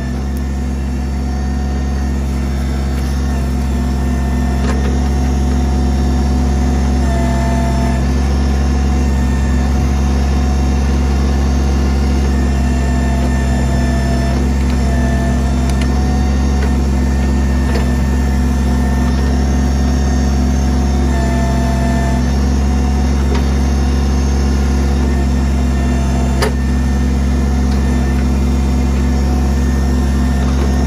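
Kubota BX23S tractor-loader-backhoe's three-cylinder diesel engine running steadily under load while the backhoe digs at a tree stump's roots. A higher hydraulic whine comes and goes a few times as the boom works, and there is one short sharp click near the end.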